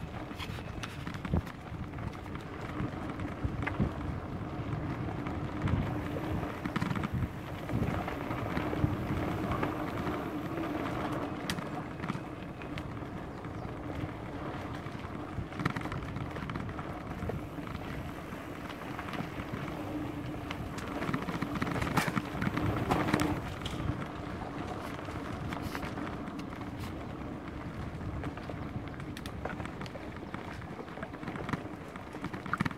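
Mountain bike riding along a dirt forest trail: steady tyre-on-dirt and wind noise with frequent clicks and knocks as the bike rattles over bumps, a louder patch of knocks about three quarters of the way through.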